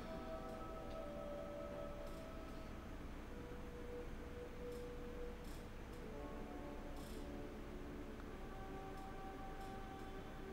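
Soft background music of held tones, several notes sounding together and shifting to new pitches every few seconds.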